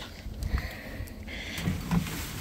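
Handling noise as a cloth boat cover is pulled aside by hand, with soft rustling and a light knock about half a second in, over a low rumble of wind on the microphone.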